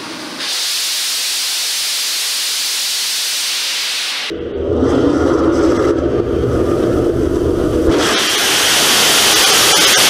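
DHX-400 'Nimbus' hybrid rocket motor firing: a loud, steady jet hiss. About four seconds in it abruptly takes on a deeper rumble, and near the end it turns bright and hissy again.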